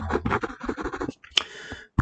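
Stylus scratching and tapping on a tablet screen while a word is handwritten: a run of quick short strokes, then one sharper click.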